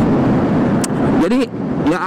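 Riding noise from a Yamaha NMAX 155 single-cylinder scooter cruising at about 60 km/h: a steady rush of wind and engine, with a short high tick a little under a second in.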